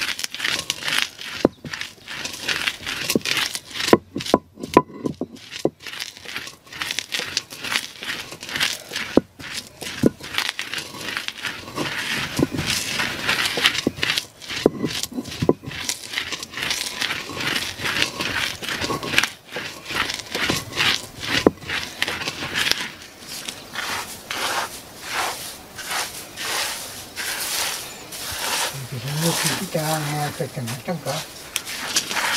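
A stone hand roller rocked back and forth on a flat stone batán, crushing dried sprouted maize (guiñapo) into meal: repeated strokes of crunching, crackling grain and stone scraping on stone.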